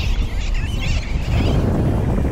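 Wind buffeting the microphone with a steady low rumble, over the chatter of a large flock of seabirds calling overhead.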